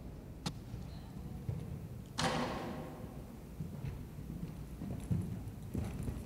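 A horse cantering on the sand footing of an indoor arena, its hoofbeats faint and dull. About two seconds in there is one sudden rush of noise that fades over about a second.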